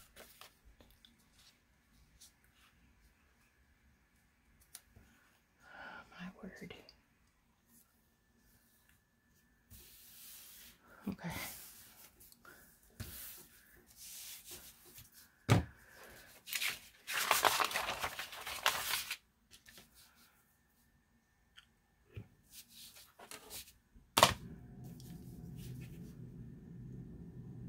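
Sheets of paper being handled and slid on a cutting mat: scattered rustles and a long loud rustle midway, with a couple of sharp clacks. The loudest clack comes near the end as a clear acrylic quilting ruler is laid down on the paper.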